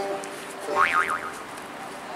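A brief high whistle-like tone swoops up and down twice about a second in, over faint music with held notes.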